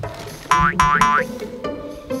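Background music with two quick springy cartoon 'boing' sound effects, one right after the other about half a second in; they are the loudest sounds.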